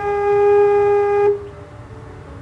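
A metal flute-stop organ pipe blown by mouth into its foot, holding one steady note that sounds like a recorder, then stopping after about a second.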